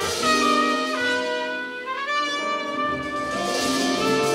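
A live jazz band's horn section, trumpet and saxophones, plays long held notes, one of them sliding upward about halfway through.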